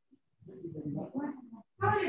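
A short silence, then about a second of a quieter, indistinct and garbled voice, with a brief break before clearer speech returns at the very end.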